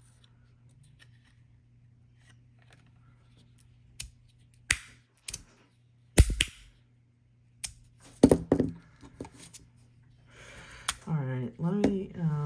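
Sharp metallic clacks from a magnetic fidget slider's plates snapping together, a handful of separate clicks spread over several seconds, the loudest about six and eight seconds in.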